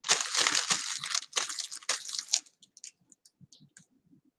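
Plastic bag crinkling in a run of quick rubbing strokes over hair for about two and a half seconds, then a few faint clicks.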